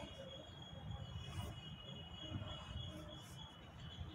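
Faint scratching of a felt-tip marker drawing a long line on paper, in a couple of light strokes, over a low steady background hum.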